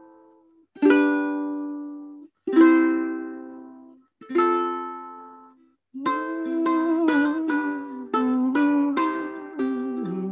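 Ukulele played through a Zoom call with Original Sound off, so Zoom's speech-focused noise suppression is active. Three strummed chords each ring and fade, then cut off into silence. From about six seconds in comes a continuous run of quicker plucked notes.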